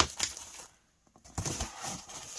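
Handling noise from a handmade paper journal being pulled out of its bag. There is a sharp knock at the start, a short near-silent gap about a second in, then irregular rustling.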